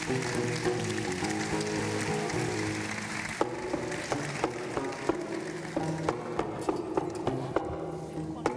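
Gnawa guembri, a three-string bass lute, playing a plucked bass riff, with the clatter of qraqeb metal castanets over it. About three and a half seconds in, the castanets drop away and the guembri's sharp, plucked notes carry on alone.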